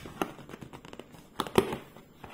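Fingers and long nails working at the lid of a cardboard box to prise it open: light scraping and rustling with a few sharp clicks, the loudest about a second and a half in.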